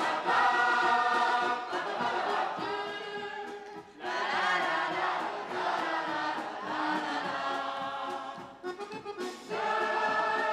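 Music with a choir singing. It drops away briefly about four seconds in and again shortly before the end.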